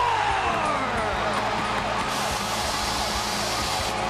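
Hockey arena goal horn sounding steadily over a cheering home crowd, signalling a home-team goal. The crowd noise swells about halfway through.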